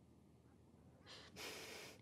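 Near silence, broken about a second in by one soft breath lasting under a second.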